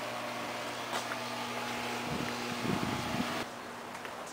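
Steady low mechanical hum with two constant tones over a noise background, cutting off abruptly about three and a half seconds in.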